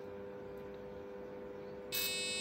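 A faint steady hum of two close tones, then near the end a loud, buzzy electronic tone starts abruptly. That tone is the first note of the crossing melody from the Edu:bit music bit's buzzer, sounding when the pedestrian light turns green.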